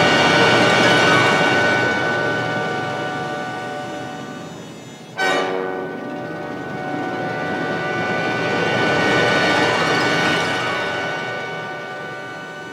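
Film soundtrack played over the hall's speakers: dense sustained chords of many held tones swelling and fading, with a sudden loud hit about five seconds in.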